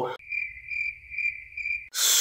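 Cricket chirping: a high, steady trill that swells about twice a second, starting and stopping abruptly.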